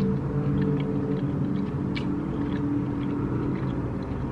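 Two people chewing chicken nuggets, with a few faint mouth clicks, over a steady low hum made of several held tones.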